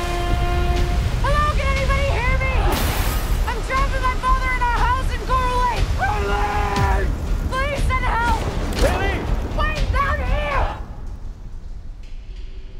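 Trailer sound mix: a high, wailing voice-like line in short notes that rise and fall, over a constant low rumble and several heavy booms. It thins out about eleven seconds in.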